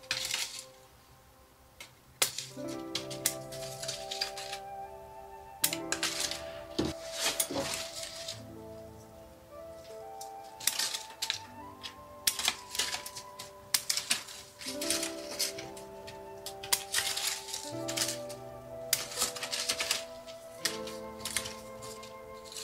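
Background music with sustained notes, over clusters of sharp clicks from scissors snipping leaves and shoots off a young chestnut tree.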